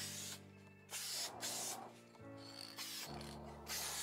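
Aerosol spray paint can spraying in a run of short bursts, each a brief hiss with a short gap before the next, as light coats are laid along the edges of a part.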